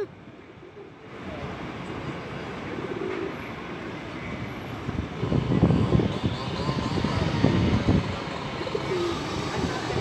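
Street traffic noise: a steady rumble that starts faintly and swells louder about five seconds in.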